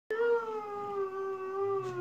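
A bull's long, drawn-out bellow: one unbroken call whose pitch sinks slowly, the bawling of cattle over a dead cow.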